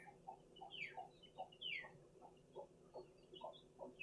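Faint soft clucking from a chicken: short low notes at an irregular pace of about three a second, with a few high, quickly falling chirps among them.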